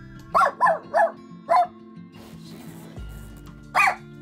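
A small puppy barking: four quick, high, sharp barks in the first second and a half, then one more near the end, over background music.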